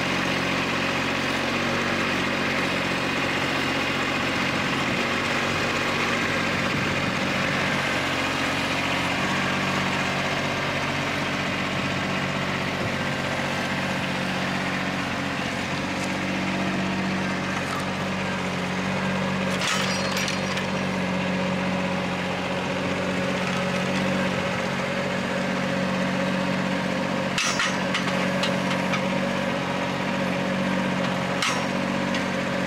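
Kubota B2601 tractor's diesel engine running steadily, driving the hydraulic timber crane, with a few sharp knocks as the grapple sets ash logs down on the pile, loudest about two-thirds of the way through.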